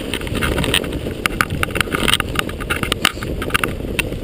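Mountain bike clattering down a rough root-and-rock descent in fresh snow, with many sharp knocks and rattles over a constant low rumble of tyres and wind on the handlebar-mounted camera.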